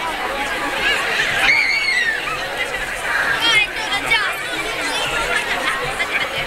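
Dense crowd chatter: many people talking at once as they press along a street, with one voice rising above the rest about one and a half seconds in.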